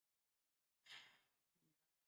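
Near silence, broken about a second in by one short, faint breathy sigh at the microphone, fading out with a brief low hum of voice.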